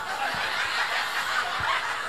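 Audience chuckling and laughing softly, a diffuse spread of many voices rather than one.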